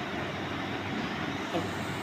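Steady, even background noise: a constant hum and hiss with no distinct events.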